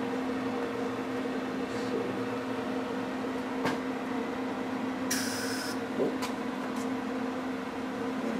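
MIG welder in use, tacking a steel gear to a shaft: a steady electrical hum, a few sharp clicks, and a half-second burst of hissing about five seconds in as a brief weld is struck.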